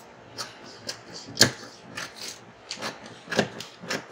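Scissors snipping through a paper sleeve pattern: a run of short, sharp snips at an uneven pace, about seven in four seconds, the loudest about a second and a half in.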